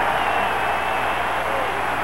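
Large stadium crowd cheering in a steady, even wash of noise that eases slightly, the home fans reacting to a third-down defensive stop. Heard on an old television broadcast recording.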